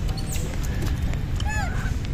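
Wind rumbling on the microphone outdoors, with faint scattered clicks and one short animal call that rises and falls in pitch about one and a half seconds in.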